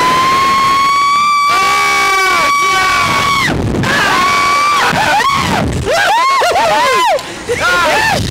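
Thrill-ride riders screaming: one long high scream held for about three and a half seconds, then a string of short rising-and-falling yells and laughing whoops as they bounce on a slingshot ride.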